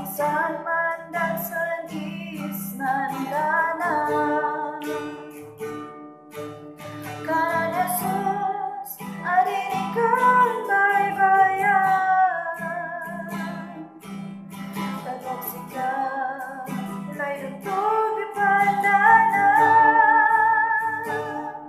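A woman singing a Kankana-ey gospel song, accompanying herself on a strummed acoustic guitar; the vocal comes in phrases with short breaks between them.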